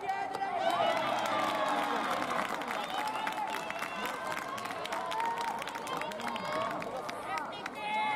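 Many young players' voices shouting and calling across a baseball field, overlapping one another without pause, with scattered short sharp clicks among them.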